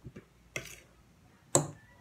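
Metal utensils clinking and scraping on a ceramic plate while boiled potato and egg are cut up: a few sharp clinks, the loudest about a second and a half in, and a short scrape about half a second in.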